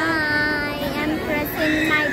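A voice holding one long, steady sung note for about a second, then a few shorter vocal sounds near the end.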